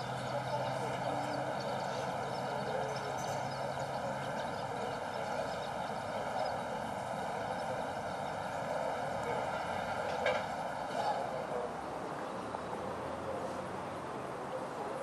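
Steady outdoor background with a low hum that fades out about four seconds in, then a single short click of a putter striking a golf ball on a tap-in putt about ten seconds in.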